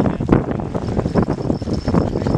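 Wind buffeting the microphone: a loud, uneven rumble that surges in gusts.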